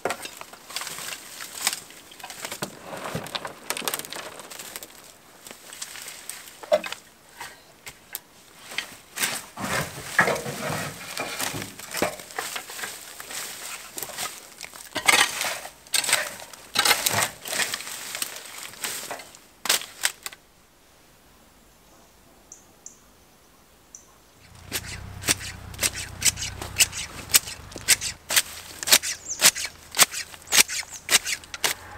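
Dry, woody garden cuttings rustling and crackling as they are forked out and chopped, with many sharp snaps and clicks. About two-thirds of the way in it goes nearly quiet for a few seconds. Then come quick, sharp snips of garden shears cutting through stems, over a low hum.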